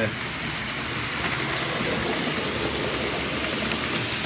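OO gauge model train running along the track, a steady rumble of wheels on rail and motor whirr that grows slightly louder as it approaches.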